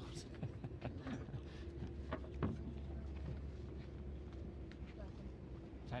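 A low steady hum runs throughout, with a few faint, brief knocks and scrapes scattered through it.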